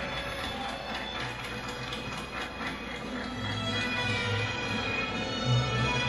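Recorded mariachi music playing, with a low bass line stepping from note to note under sustained higher lines.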